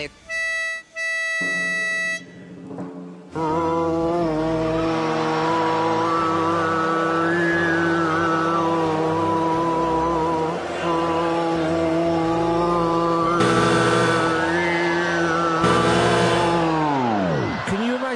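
A woman's voice holding one long, unbroken low note while a whistling line of overtones rises and falls above it, in the manner of overtone singing. The note ends in a falling glide. The audience cheers twice over it near the end.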